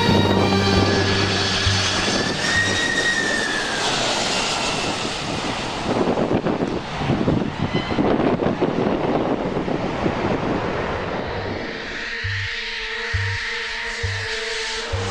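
Jet airliner engines passing low overhead: a loud roar with a whine that rises and then falls in pitch, turning rougher midway. Background music fades out at the start and comes back near the end.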